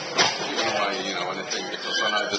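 People laughing and talking after a joke, with voices overlapping.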